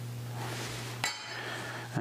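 A single sharp metallic clink with a brief ringing tail about halfway through, as metal plating tweezers are put down, and a lighter tap just before the end. A steady low hum runs underneath.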